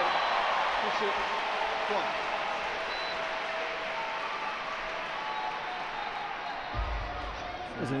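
Arena crowd cheering and applauding a scored touch, loudest at the start and slowly fading, with shouting voices in the noise.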